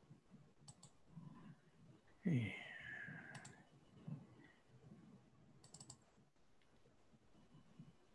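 Faint computer mouse clicks, single ones and a quick run of several about six seconds in. About two seconds in there is a brief murmur with a falling pitch.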